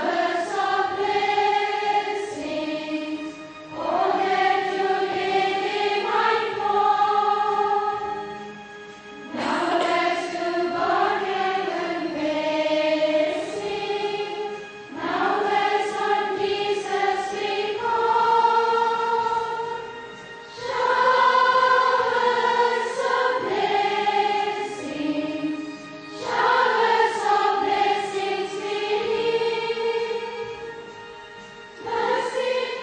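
A choir singing in slow phrases of held notes, each about five seconds long, with short breaks between them.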